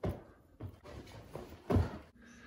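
Feet thudding on a rug-covered floor as children take off and land in two-foot jumps over a stack of pillows: several separate thuds, the loudest near the end.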